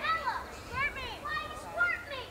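Several children's voices calling out and chattering, high-pitched and overlapping, in short bursts throughout.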